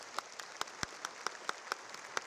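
An audience applauding, with the sharp claps of one nearby pair of hands standing out at about four to five a second.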